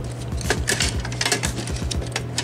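Die-cast metal model car body parts clicking and clinking lightly as they are handled and fitted onto the chassis: a string of small knocks and clinks.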